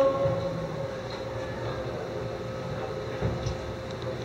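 Pause between phrases of the adhan: the muezzin's last held note dies away in the first half-second, leaving a steady low rumble of room noise.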